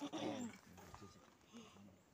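A large white dog gives a short growl, about half a second long.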